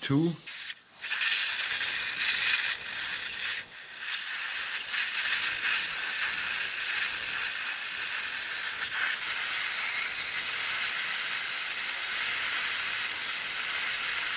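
Steady hissing from a Piezotome ultrasonic bone-surgery handpiece, its cooling spray and the surgical suction, cutting bone around an impacted third molar; a thin high whine sits above the hiss. The hiss starts about a second in and dips briefly near four seconds.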